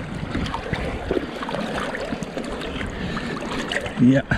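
Shallow seawater sloshing and splashing close to the microphone in a rock pool, with a steady run of small clicks and taps.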